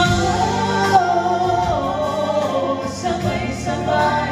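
Two men and a woman singing a slow ballad together in harmony into microphones, over an instrumental backing track.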